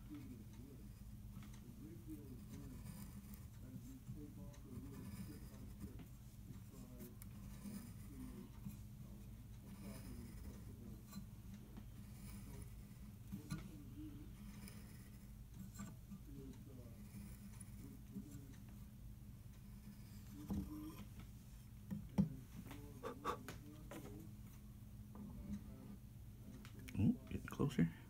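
Faint, intermittent scraping of a hand-turned tapered reamer shaving wood from a tuning-pin hole in a laminated maple pin block, tapering the hole to seat a tapered tuning pin. A steady low hum runs underneath, and a few light clicks come near the end.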